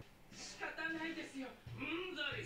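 Anime dialogue playing at low level: a young man's voice in Japanese, apologizing in a pleading tone.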